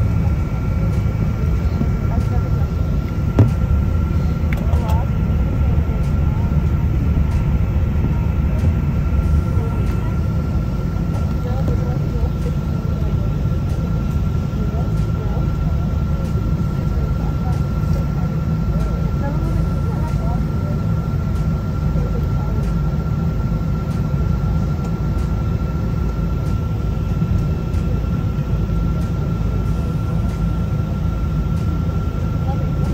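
Airliner cabin noise while taxiing: the steady low rumble of the jet engines and rolling airframe, with a thin constant whine over it.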